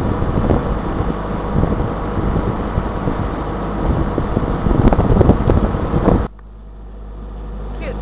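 A motoring sailboat's engine running steadily with a low hum, under heavy wind buffeting on the microphone. About six seconds in, the sound drops suddenly to a quieter, steady engine hum.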